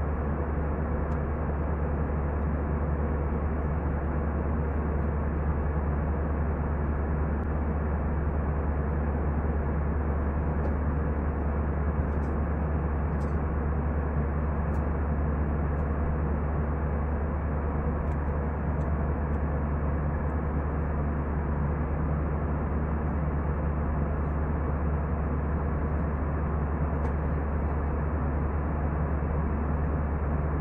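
Deep, steady drone of an Airbus A320 cabin in flight: engine and airflow noise heard from a window seat over the wing, unchanging in level and pitch.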